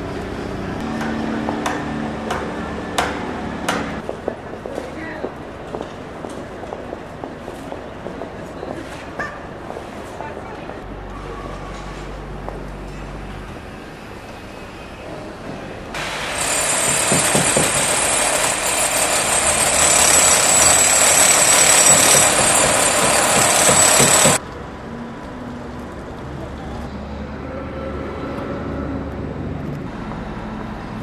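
Construction-site noise on a tram-track rebuilding site: sharp metal knocks over running machinery in the first few seconds, then scattered clicks. About sixteen seconds in, a loud, steady hissing rush starts abruptly and cuts off about eight seconds later.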